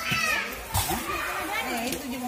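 Background chatter of several voices, with a short knock a little under a second in.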